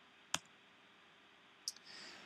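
A single sharp click of a computer mouse button as the lecture slide is advanced, against near silence; a fainter short tick follows near the end.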